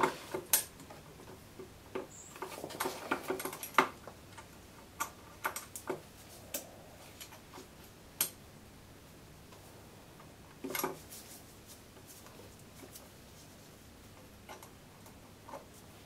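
Faint, scattered clicks and taps of a brake cable end and the handlebar brake lever of a Yamaha Jog CG50 scooter being handled as a new rear brake cable is fitted into the lever, with a short louder clatter about two-thirds of the way through.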